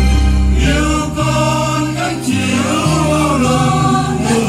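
Choir singing a Vietnamese Catholic hymn over instrumental accompaniment, its low bass notes changing in steps.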